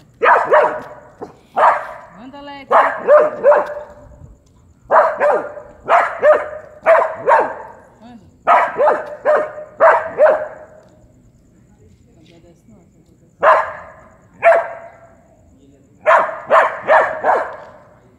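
A dog barking repeatedly in quick runs of two to four loud barks with short pauses between, while squared off with a cat; after a lull midway come two single barks, then a final quick run near the end.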